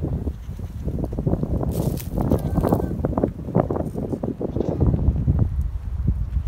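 Footsteps crunching through dry grass and brush on a slope, a quick irregular run of steps, with wind rumbling on the phone microphone.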